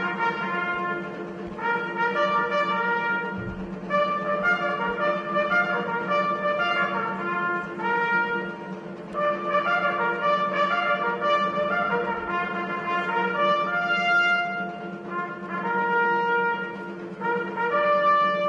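Solo trumpet playing a slow melody of separate, held notes, over a steady low hum.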